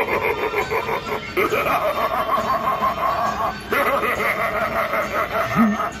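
Talking killer-clown Halloween animatronic laughing and snickering in a recorded voice through its built-in speaker, with a short break about two-thirds of the way through.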